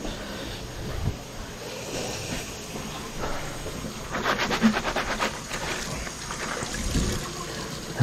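Water running down a washbasin drain, with a quick rattle in the pipe about four seconds in, heard as a clattering "dagrak dagrak". The plumber takes it as a sign of a step in the drain pipe.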